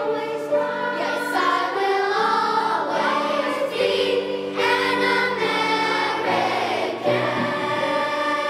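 A children's choir singing, the voices holding long notes that move from pitch to pitch.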